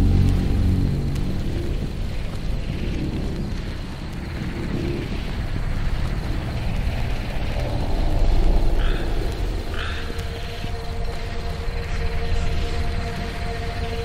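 Dark ambient music with the melody carried by a deep bass, and long held tones from about halfway through, mixed with swamp nature sounds. Two short chirps come about nine and ten seconds in.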